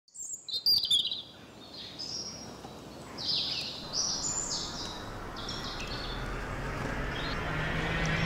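Birds chirping: a run of short, high calls that drop in pitch, over a low hiss that slowly swells toward the end.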